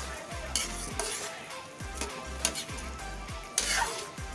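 A metal ladle stirring chunks of braised pork in sauce in an aluminium wok, scraping and clinking against the pan several times. The loudest scrape comes near the end.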